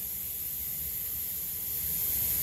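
CNC vertical machining center running, its axis drives moving the table through a counterclockwise circle: a steady hiss with a low hum underneath, growing a little louder near the end.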